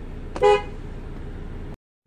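A 2015 Ford Transit van's horn gives one brief toot about half a second in, heard from inside the cab over a steady low rumble.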